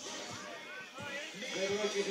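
Faint voices over background music, with a man's commentary voice coming back in strongly near the end.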